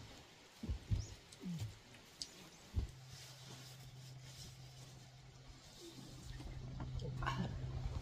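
Wind buffeting the microphone in low gusts that grow stronger from about six seconds in, under a steady low hum. A few short low vocal sounds and a knock come in the first three seconds.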